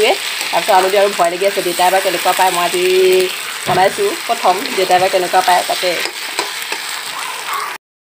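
Pieces of meat sizzling as they fry in a blackened iron kadai, stirred with a spatula that scrapes repeatedly against the pan. The sound cuts off suddenly just before the end.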